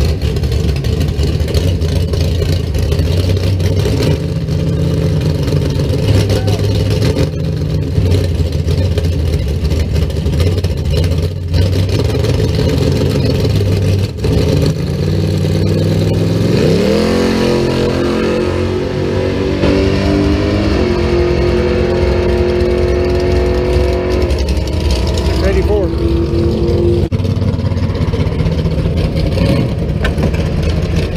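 1966 Chevelle's engine running at the drag strip starting line, then revving up with a rising pitch about halfway through and holding high revs for several seconds before dropping back.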